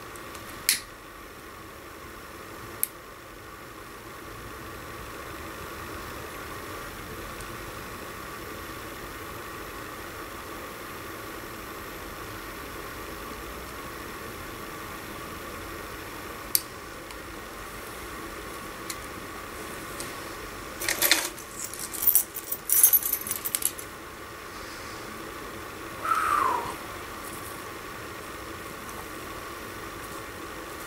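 A tobacco pipe being lit with a lighter: a few sharp lighter clicks, then a cluster of quick puffing and handling noises midway, over a steady background hiss. A short falling squeak sounds near the end.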